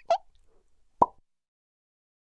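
Edited-in sound effect of short, pitched 'plop' notes, the last one about a second in, followed by dead silence on the soundtrack.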